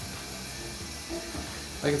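Low steady hum with faint, quiet background music.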